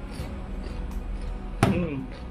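A small sauce bowl with a spoon in it set down on a table: one sharp knock about one and a half seconds in that rings briefly, dropping in pitch. Background music plays underneath.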